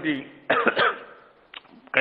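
A man clears his throat with a short cough about half a second in.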